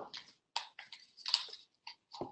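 Folded white paper crinkling and rustling in short bursts as hands handle a finished origami paper boat.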